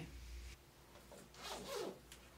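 Zipper of a fabric backpack being pulled open in one short stroke, a little past halfway through.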